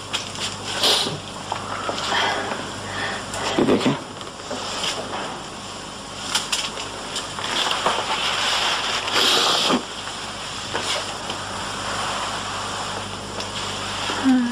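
Soft, indistinct speech over the steady hiss and low hum of an old, worn video recording, with a few brief handling noises.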